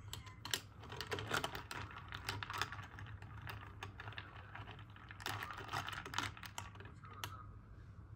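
Glass straw stirring iced coffee in a double-walled glass mug: ice cubes clinking and tapping against the glass in quick, irregular clicks, which stop shortly before the end.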